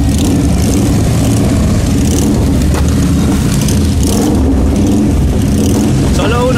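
Several motorcycle engines running close by, a steady low drone that does not let up.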